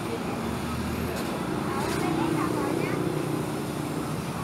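Street traffic: motorbike and car engines passing close by, a steady hum with an engine tone swelling in the middle, mixed with the murmur of nearby voices.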